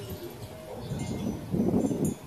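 Hanging glass crystal wind chimes tinkling lightly in a breeze, with short, high, scattered rings. A louder low sound swells near the end.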